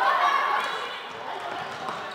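Voices of players and spectators shouting and calling across a floorball game, echoing in a large sports hall, with a sharp knock near the end.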